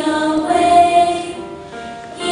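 A group of voices singing a song together with music, the notes held and moving from one pitch to the next, growing softer near the end.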